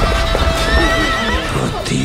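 A horse whinnying once, a wavering call about a second long, with hoofbeats of galloping horses over a dramatic film-score soundtrack.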